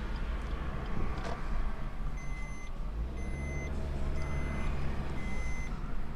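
An electronic warning beeper sounding at a steady pitch, about once a second, each beep about half a second long, starting about two seconds in. Under it runs the low running and road noise of the moving car's cabin.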